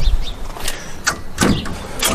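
Handling noise from a camera being moved and adjusted: a few sharp knocks and rubbing over a low rumble.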